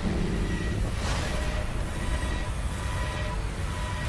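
Trailer sound design: a dense low rumbling drone under faint held tones, with a whooshing swell of noise about a second in.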